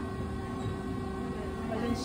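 Steady low hum of a stalled dark ride's building, with a few faint held tones over it; the ride vehicle is standing still.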